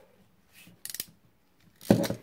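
Hand ratchet crimp tool clicking shut on a brass bullet connector, a quick run of sharp clicks about a second in, followed by a louder clack near the end as the jaws release.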